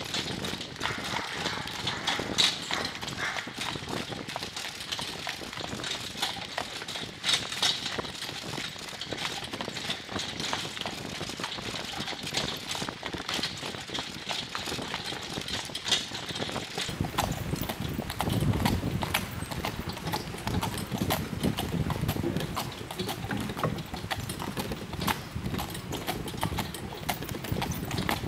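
Horse's hooves clip-clopping at a walk on a sandy gravel path as it pulls a carriage. A low rumble joins past the middle.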